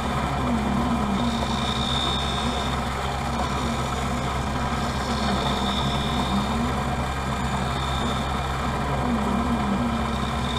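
Optical lens edger running, its bevel wheel grinding about a quarter millimetre off the edge of a Transitions bifocal plastic lens so it will fit the frame. A steady motor hum, with a low tone that wavers up and down every few seconds.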